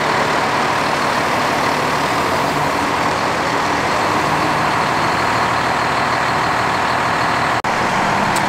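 Heavy diesel water truck's engine idling steadily, with a low, even drone; the sound drops out for an instant near the end.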